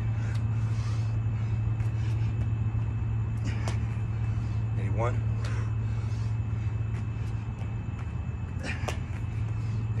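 Burpee reps on a mat over concrete: a sharp slap from a jump and landing roughly every five seconds, twice in all, over a steady low hum. A single counted number is called out midway.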